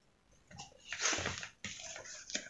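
A plastic ruler scraping and sliding across drawing paper as it is repositioned, with the paper rustling. The scrape is loudest about a second in, and a shorter one follows near the end.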